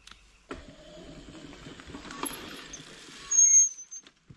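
Small yellow mini dirt bike riding in, its motor running with a high whine that is loudest just before the end.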